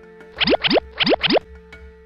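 Four quick cartoon sound effects, each sliding upward in pitch, in two pairs, over a held note of background music.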